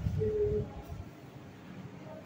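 A person's voice briefly humming one steady note, about half a second long, hoot-like, near the start; then faint room noise.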